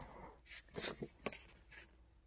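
Paper and card packaging rustling and sliding as hands pull inserts out of a cardboard box, in about four short, faint rustles.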